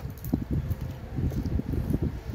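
A person chewing a mouthful of crispy pata (fried pork knuckle) with mouth closed, close to the microphone: irregular soft low thumps with faint crackles.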